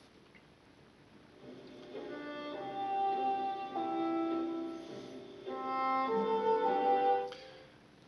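Classical music with held notes playing through the speakers of a 1960 Rincan W71 AM-FM tube radio. It comes in about a second and a half in out of near silence, dips for a moment midway, and cuts off abruptly near the end.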